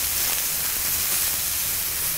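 Button mushrooms sizzling in a very hot cast-iron skillet, a steady even hiss as they caramelise.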